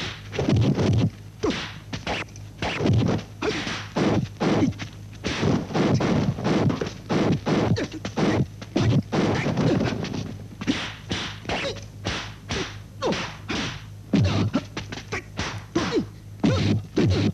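Kung fu film fight sound effects: a rapid run of dubbed punch and kick thwacks, several a second, as the two fighters exchange blows.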